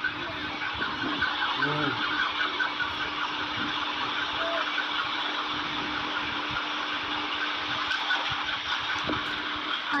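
Steady background hiss with a low, even hum underneath, with a few faint voice sounds near the start.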